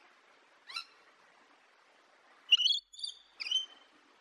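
Rainbow lorikeet calling: one short high chirp just under a second in, then three quick, loud, shrill chirps near the end, the first of them the loudest.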